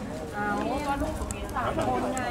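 Several voices talking over one another in a crowd of reporters, with a couple of short sharp clicks.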